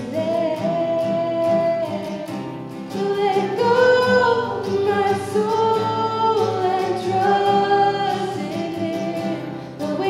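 A woman singing a worship song, accompanied by her own strummed acoustic guitar.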